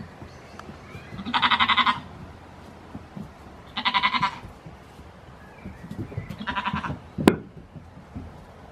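Goat kid bleating three times, each a high, wavering call of about half a second, a couple of seconds apart. A single sharp click comes just after the third bleat.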